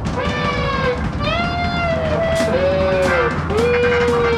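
Electric guitar playing a lead line of sustained notes bent and slid downward, over a rock band backing of drums, bass and organ.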